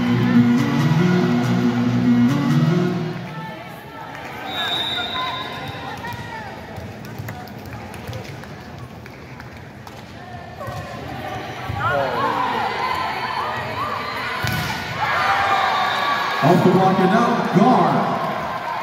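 Indoor volleyball arena sound: PA music for the first three seconds, then crowd chatter with a short high whistle about four and a half seconds in and ball contacts during play. Crowd voices swell and are loudest near the end.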